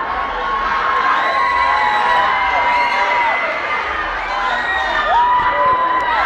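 Audience cheering and screaming, many high voices holding long calls over one another.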